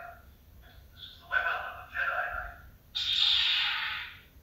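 Star Wars film voices played through the small built-in speaker of a Hallmark Death Star Storyteller tree topper, followed near the end by a burst of hissing noise lasting about a second.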